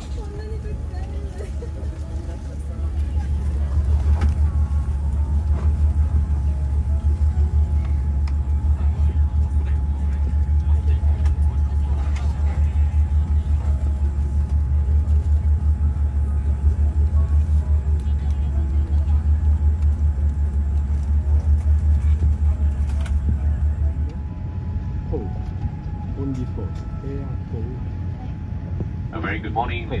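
Steady low rumble of a parked airliner's cabin, with a faint constant tone over it. The rumble is louder through most of the middle and eases off near the end.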